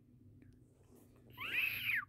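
A single short, high-pitched call that rises and then falls in pitch, about a second and a half in.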